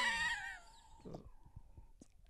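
A short laugh trailing off and fading out within the first half second, followed by near quiet with a few faint small ticks.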